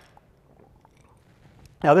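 A pause in a man's talk: faint room tone with a few small mouth clicks, then he starts speaking again near the end.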